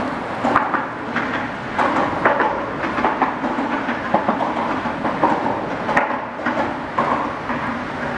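A continuous rumble with irregular clattering knocks throughout, the sound of traffic crossing a bridge.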